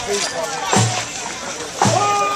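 A deep drum struck slowly, about once a second, over voices and crowd chatter.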